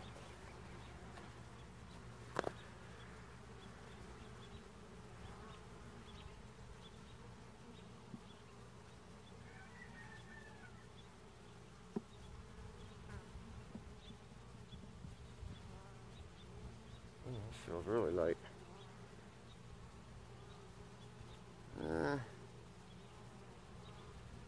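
Honey bees buzzing around an open hive: a faint, steady hum. Twice near the end a bee flies close past, its buzz louder and wavering in pitch.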